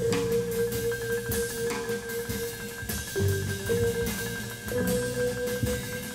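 Small jazz group playing: vibraphone holding long, wavering notes that change pitch a few times, over double bass and light drum-kit cymbal work.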